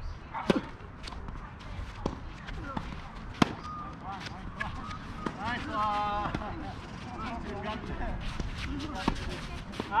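Tennis balls struck by rackets in a doubles point: sharp pops of ball on strings, starting with the serve about half a second in. The loudest hit comes about three and a half seconds in, and further hits follow at uneven gaps. A player's brief call is heard around the middle.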